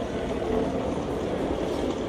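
Steady low rumble of busy city street ambience, with no single distinct event standing out.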